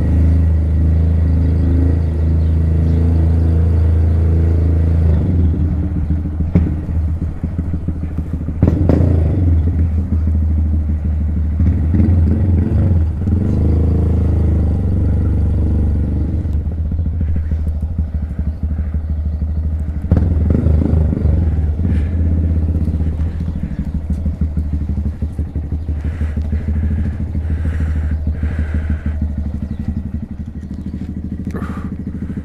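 Honda Grom's small single-cylinder engine running under a slow ride, steady at first, then uneven with a few knocks, and getting quieter toward the end as the bike slows.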